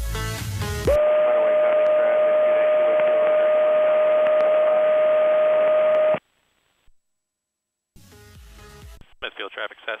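Electronic dance music breaks off about a second in. A steady whistling tone with hiss comes over the aircraft radio and headset audio for about five seconds, then cuts off suddenly. After a short silence and a brief snatch of music, a pilot's radio call begins near the end.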